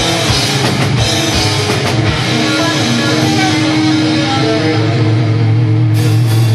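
Live heavy metal band playing loudly: distorted electric guitar over drums. After about two seconds the fast drumming stops and long held notes ring out.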